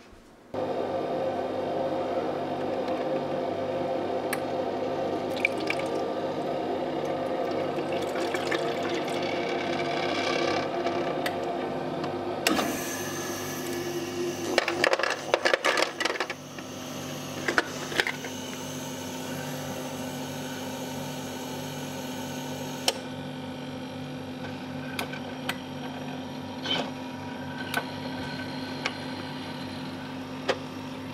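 Countertop ice maker running with a steady hum. A clatter of ice cubes dropping into the basket comes between about 12 and 16 seconds in, and a few single clicks follow.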